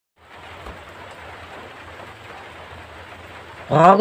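A steady, even hiss of background noise with a low hum, then a man's voice begins just before the end.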